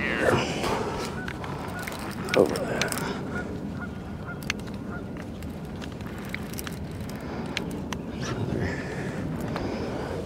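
Geese honking, with the loudest calls right at the start and again about two and a half seconds in, over a steady background of wind and water, with a few sharp clicks scattered through.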